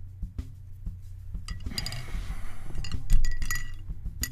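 Glass clinking and rattling, a paintbrush knocked against a glass jar, starting about a second and a half in and loudest near the end.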